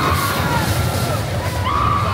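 Roller coaster train running past on its steel track, a steady rumble, with riders' shouts and music mixed in.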